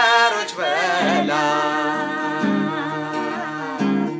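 A man and a woman singing an Amharic worship song together, accompanied by an acoustic guitar. They hold one long note from about a second in until near the end.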